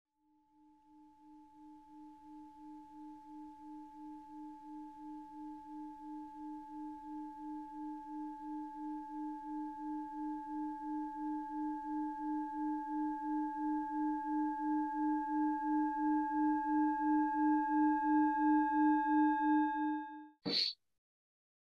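Singing bowl ringing one low tone that wavers about three times a second, with fainter higher overtones, swelling steadily louder.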